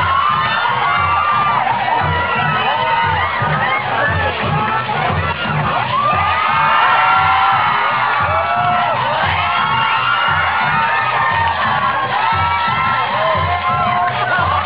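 An audience cheering and shouting, many high voices at once, over dance music with a steady beat about twice a second.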